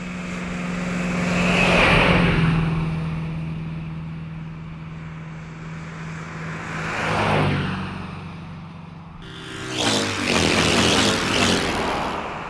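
A motor vehicle running with a steady low hum. Twice the sound swells louder and fades away, and it turns louder and rougher near the end.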